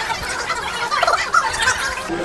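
Busy overlapping chatter and warbling voice sounds from people at nearby tables, broken by a few sharp clicks.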